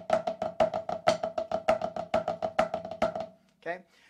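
Marching snare drum played with sticks: a steady, even stream of alternating flams in a triplet rhythm, every note flammed, the tightly tuned head ringing under the strokes. The playing stops shortly before the end.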